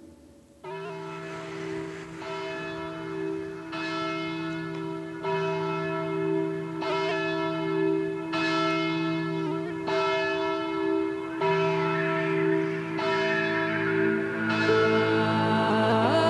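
Church bells ringing, with a new strike about every second and a half and the tones hanging on between strikes. Music swells in under them near the end.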